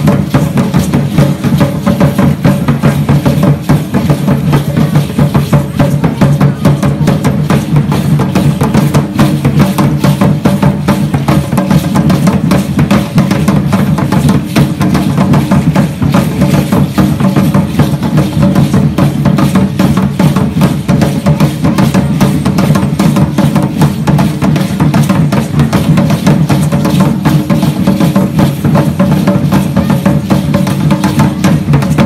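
Loud drumming for an Aztec-style (concheros) dance: large drums beating a fast, steady rhythm.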